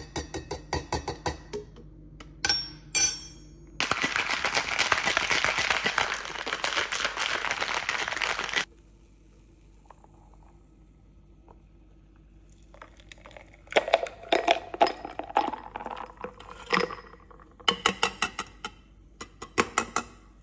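Ice rattling hard in a stainless steel cocktail shaker as iced coffee and protein powder are shaken, a dense rattle lasting about five seconds. Before it come quick metallic clinks of a spoon against the shaker. Later come more clinks of ice and metal as the frothy drink is poured into a glass.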